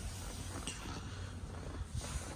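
Quiet, steady background noise with a low rumble and no distinct event.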